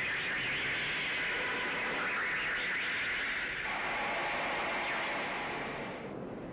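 Steady hissing noise with no clear pitch or rhythm, strongest in the upper-middle range. Its character shifts about three and a half seconds in, and it drops away abruptly at the end.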